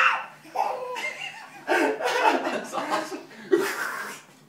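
A baby giggling and an adult man laughing along, in several short fits of laughter with brief pauses between them.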